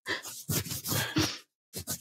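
Breathy laughter: airy exhalations for about a second and a half, then a short pause and a couple of brief breathy bursts near the end.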